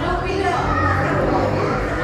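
Indistinct background voices, including children's voices, carrying on steadily.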